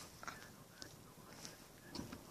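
Near silence: faint car-cabin room tone with a few soft, faint clicks.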